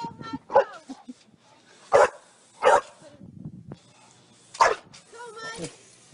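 A bulldog barking: about four short barks spread through the few seconds, with quieter stretches between them.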